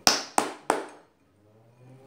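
Three sharp knocks about a third of a second apart as a horseradish bottle is smacked to shake the horseradish out.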